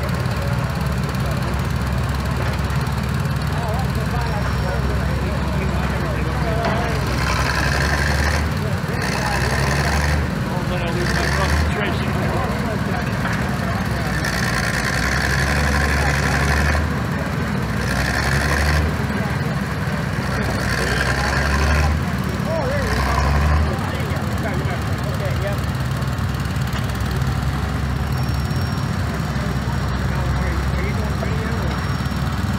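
Several small tractor engines running steadily, with louder surges now and then, typical of the machines working under load.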